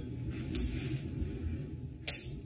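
Faint handling of a tiny metal tie-clip knife and lighter cufflink between the fingers, with one sharp small click about half a second in, over a low steady hum.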